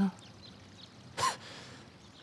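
A single short, sharp gasp of shock about a second in, over faint birdsong.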